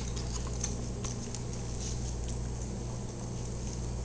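Faint scattered light clicks and patter from a small dog moving on a tile floor and settling with its rubber Kong toy, its claws tapping the tile and the Kong knocking on it, over a steady low hum.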